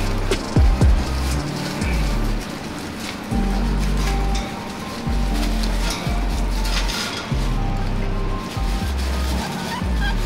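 Background music with a deep bass line that steps between held notes, and regular sharp drum hits.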